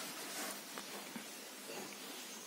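Faint steady hiss of a quiet room with a few soft rustles as a person rolls back on a yoga mat.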